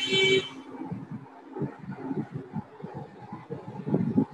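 A brief horn-like toot lasting about half a second right at the start, followed by low, irregular background rumble picked up through a meeting participant's microphone.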